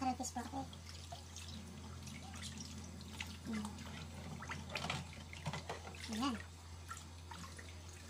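Kitchen tap running into a stainless steel sink, with light splashing and scattered short splashes as hands rub a whole fish clean under the water.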